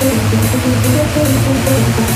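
Instrumental hard trance track playing: a driving electronic beat with a hi-hat hitting a little over twice a second over a steady bass line.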